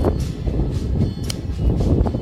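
Wind buffeting the handheld camera's microphone: a steady low rumble that swells and dips unevenly.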